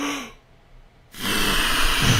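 A person blowing hard at a lit birthday candle held up to the microphone. It is a loud rush of breath that starts about a second in and keeps going.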